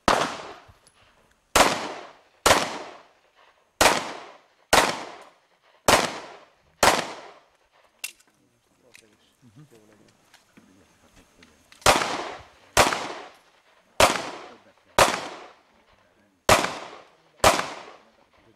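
Heckler & Koch P2000 pistol fired in single shots, each ringing out with a short echo. Seven shots come about a second apart, then there is a pause of about five seconds, then six more shots at the same pace.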